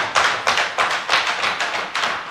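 Members of the assembly banging their hands on their wooden desks in approval, a rapid rhythmic pounding of about four knocks a second.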